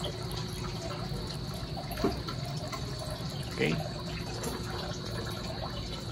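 Steady rush of water jetting from the open end of a pump-fed PVC pipe and splashing onto a corrugated metal roof, the flow throttled by a half-open gate valve.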